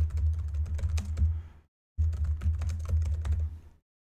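Typing on a computer keyboard: a quick run of key clicks, broken by a short silent gap a little before halfway, over a steady low hum.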